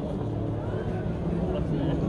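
Murmur of a large standing crowd, with a low steady rumble underneath.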